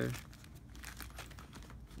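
Clear plastic bag holding a spare set of wax shoelaces crinkling as it is handled, a run of faint, irregular crackles.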